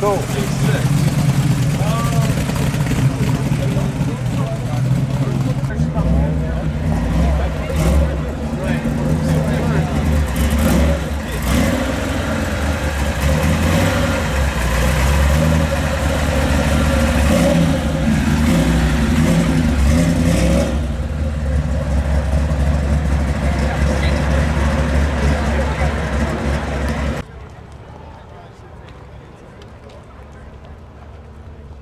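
Show cars driving slowly past: a first-generation Camaro SS's V8 rolling by, then a primer-grey 1955 Chevrolet with a hood scoop running loud and deep from about six seconds in. The sound cuts off abruptly near the end.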